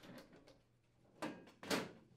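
Sheet-metal top access panel of a built-in microwave being lowered and slid into place on the metal cabinet: two short sounds of metal sliding and settling on metal, a little after a second in and again near the end.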